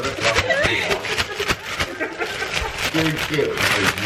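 A clear plastic bag holding a cake and icing sugar being shaken vigorously, crinkling and rustling in quick, repeated bursts. People talk and laugh at the same time.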